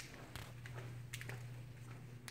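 Footsteps on a ceramic tile floor: a few soft, irregular taps over a steady low hum.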